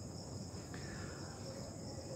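Faint, steady high-pitched insect chirring over a low background hiss.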